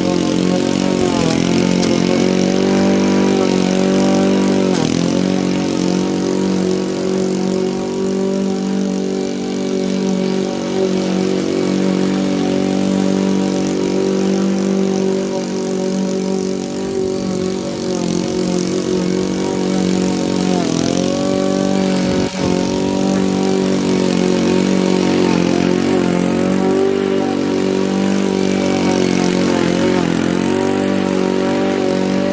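Honda walk-behind rotary lawn mower's petrol engine running steadily while cutting long, overgrown grass, dipping briefly in pitch a few times and recovering. One sharp click about two-thirds of the way through.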